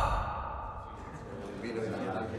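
A loud scene-change sound effect fading out over the first half second, giving way to the faint murmur of a crowd of voices in a large hall.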